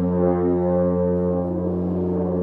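Alphorn playing a solo cadenza: a steady low tone sounds beneath a run of higher notes that shift every few tenths of a second.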